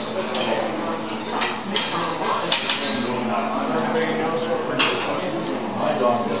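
Plates, cups and cutlery clinking at a busy dining table, several sharp clinks scattered over a steady background of many people chatting.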